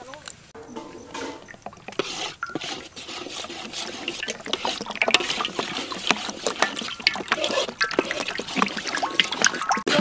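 Cooking oil poured from a bottle into a hot wok, trickling and crackling, the crackle growing louder from a few seconds in.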